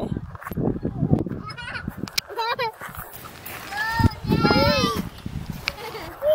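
A young child's high-pitched, wordless calls: a short one about two seconds in and a longer one around four to five seconds in, over a low rumbling noise.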